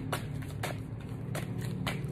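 A deck of large oracle cards being shuffled by hand, with soft card snaps about every half second, over a steady low hum.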